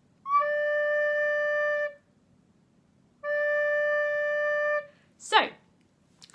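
Descant recorder playing low D, two steady held notes of about a second and a half each with a short gap between them. A brief sharp sound comes near the end.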